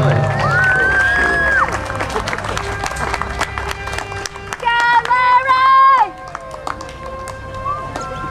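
A man hollering in contest style: a long, high held call near the start and a second long held call about five seconds in.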